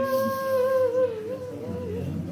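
A mourner's voice holding one long note of nyidau, the Dayak Kenyah crying lament sung over the dead. The note wavers and breaks up about a second in, then trails away.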